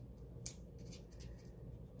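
Faint handling of paper, with one short sharp click about half a second in and a few light ticks after it.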